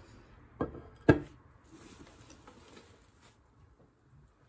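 A sharp knock about a second in, then faint rustling as a cut-glass crystal bowl is handled and lifted out of its packing.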